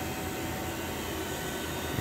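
A steady machine hum with an even hiss and a faint steady tone, with no distinct clicks or knocks.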